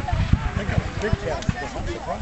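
Indistinct talking of several people close by, with irregular low thuds underneath.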